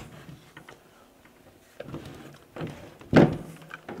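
Equipment being shifted about on a wooden workbench: a few light knocks, then one loud thump about three seconds in as the shallow well pump is set down.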